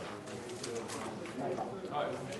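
Indistinct murmur of several people talking quietly in a hall, with a few faint clicks and knocks.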